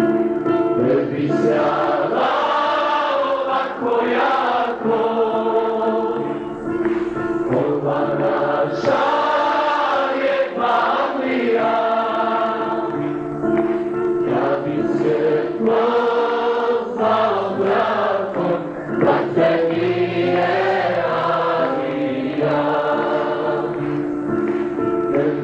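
Choir singing a slow song over steady held chords.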